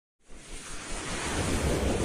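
Whoosh sound effect of an animated logo intro: a rushing noise with a deep rumble underneath, swelling up out of silence over the first second.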